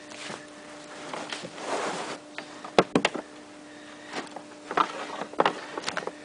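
Scattered handling noises: rustling, light knocks and two sharp clicks about three seconds in. Under them runs a steady low hum. The reciprocating saw is not yet running.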